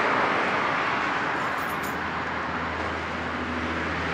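Outdoor rumble with a steady low engine hum coming in a little past halfway: the Dodge Charger Scat Pack's 392 Hemi V8 started and idling.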